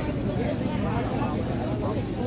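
Several people's voices talking at once over a steady low rumble, with no one voice standing out.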